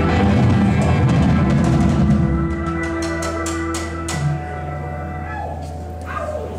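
Live rock band playing an instrumental passage: an electric guitar holds notes over a steady bass, and the drum kit plays a quick run of cymbal and drum hits in the middle. The hits stop about four seconds in, leaving the guitar ringing on its own, slightly quieter.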